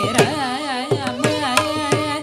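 Carnatic classical singing by a woman, her voice swaying and gliding in pitch with gamaka ornaments, over violin and mridangam strokes, in raga Ramapriya.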